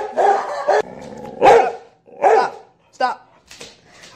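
Dog barking: three short barks a little under a second apart, the first about a second and a half in.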